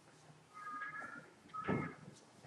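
Whiteboard duster rubbing across a whiteboard and squeaking against the surface: a thin squeak about half a second in, then a louder wiping stroke with another squeak near the end.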